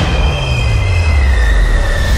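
Subway train's steel wheels squealing against the rails over a heavy low rumble. Several high squeals sound at once, and one slides slightly lower in pitch.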